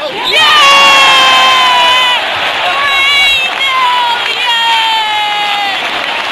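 A boy yelling in long held shouts over a football stadium crowd cheering. The first shout lasts about two seconds and falls slightly in pitch, with a shorter one and then another long one later on.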